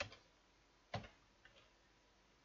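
Faint computer keyboard keystrokes: a click at the start and another about a second in, which enters a terminal command, then a fainter tap.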